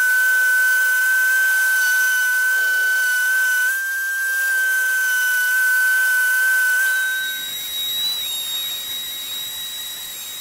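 Electric random orbital sander running with a steady high whine while sanding the palm swell of a wooden axe handle smooth over a dowel crack repair. About seven seconds in, the whine jumps higher in pitch and gets quieter.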